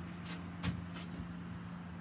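Faint handling noise as a string-tied bunch of rosemary is hung up on a wall: a few light clicks and rustles, the clearest a little under a second in, over a steady low hum.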